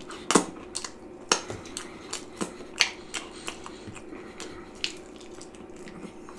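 Wet, irregular mouth clicks and smacks of a man chewing a slice of cheese pizza topped with pork and beans and licking the sauce off his fingers.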